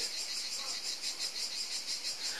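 Insects chirping in a steady, fast, high-pitched pulsing chorus.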